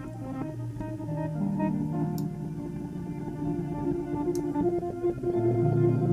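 Looped electric guitar swells with delay, pitched down an octave and played on their own: soft, sustained, overlapping low tones that drift slowly from note to note, with no drums.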